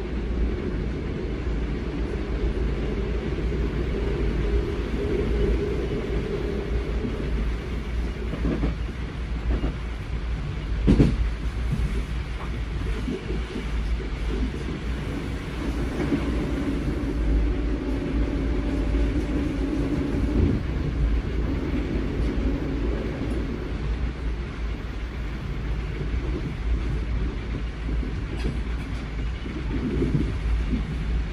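ÖBB class 4020 electric multiple unit running along the line, heard from inside the passenger compartment: a steady rumble of wheels on rail, with a single sharp knock about eleven seconds in. About sixteen seconds in, a passing train adds a louder hum for a few seconds, which cuts off abruptly.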